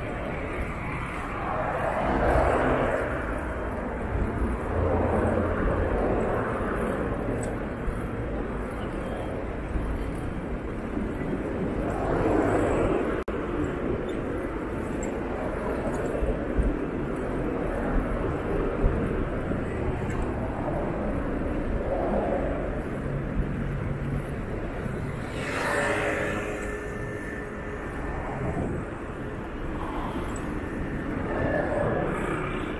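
Road traffic on a city street: cars and taxis passing one after another, each swelling and fading over a steady low rumble. Near the end one louder pass carries a brief whine.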